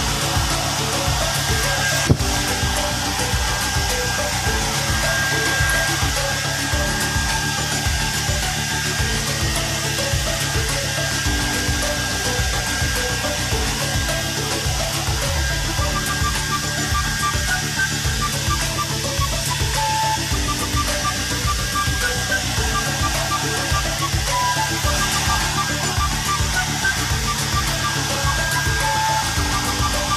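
White handheld hair dryer running steadily, with background music playing over it. A single sharp click about two seconds in.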